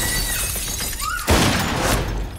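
A sharp impact about a second and a half in, followed by a bright shattering crash like breaking glass, with the tail of an earlier crash at the start. Short startled cries come in between.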